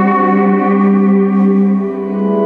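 Live band music: sustained, effects-laden electric guitar notes with chorus and echo, held as a steady chord without drums. The chord changes just before the end.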